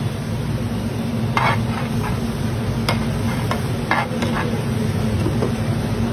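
Flat metal spatula scraping and tapping on a large tava griddle as vegetables and butter are chopped and mixed, over a steady sizzle and low hum. The scrapes come about a second and a half in, then in a quick cluster between about three and four and a half seconds.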